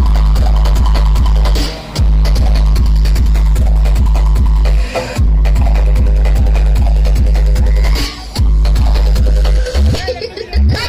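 Loud electronic dance music with a heavy, pounding bass beat played over a DJ sound system. The bass cuts out briefly three times, about every three seconds.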